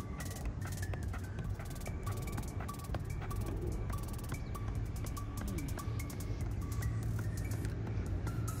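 A football being juggled on foot, with short regular kicks a little more than two a second, under background music with a steady beat.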